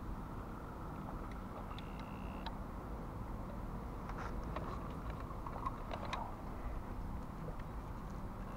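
Steady low background rumble with a few faint clicks and knocks from the plastic RC truck being handled.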